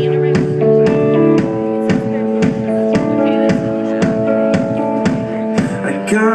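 A live band playing an instrumental passage: the drum kit keeps a steady beat of about two hits a second under sustained guitar and keyboard chords.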